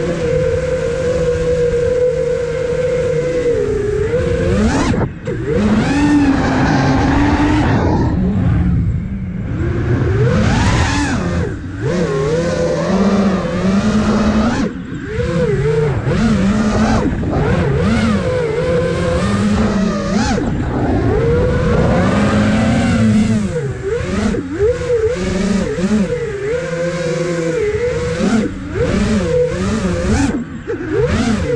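Five-inch FPV quadcopter (iFlight Nazgul Evoque F5) in freestyle flight, recorded from the camera on board: its brushless motors and propellers whine continuously, the pitch rising and falling as the throttle changes, with a few short dips in level.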